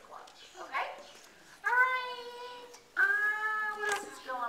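A woman's voice singing into a microphone: two long held notes, each about a second long, starting abruptly and staying steady in pitch.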